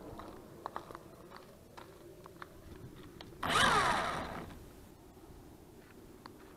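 The quadcopter's small electric motors whirring briefly about three and a half seconds in, their pitch falling as they spin down. A few faint clicks come before.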